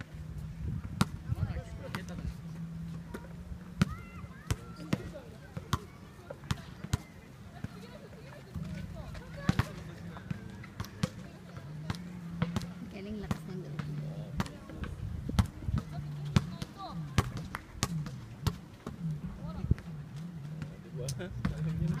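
Basketballs bouncing on an outdoor hard court: sharp, separate bounces at an irregular pace, with faint voices in the background.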